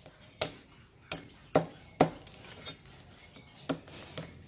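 Heavy cleaver chopping a boiled crab on a thick wooden chopping block: five sharp, irregular strikes, the two in the middle loudest. The shell of the big crab is very hard.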